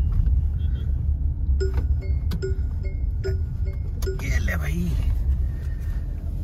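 Mahindra XUV700's seat-belt reminder chime beeping four times, about one beep every 0.8 seconds, over the low rumble of the car rolling slowly: a seat belt is still unfastened.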